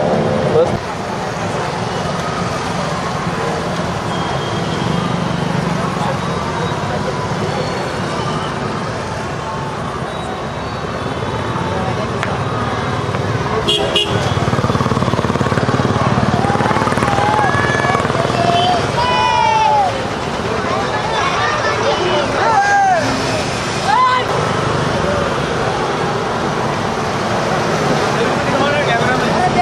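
Busy festival street din: vehicle engines, many overlapping voices and vehicle horns tooting, with loud calls standing out in the second half.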